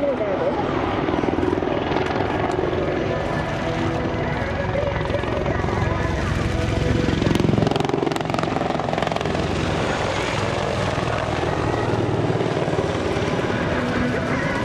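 AH-64D Apache attack helicopter flying a display pass, its twin turboshaft engines and main-rotor beat running steadily. It is loudest about seven to eight seconds in as it passes close overhead, then eases slightly as it moves away.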